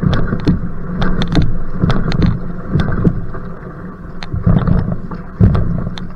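Single-blade paddle strokes on an outrigger canoe at sprint pace: the blade catching and splashing water about once a second. Underneath is a steady rumble of head wind on the microphone.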